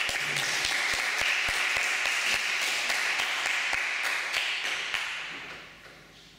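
Audience applauding: a dense run of many hands clapping that fades away about five seconds in.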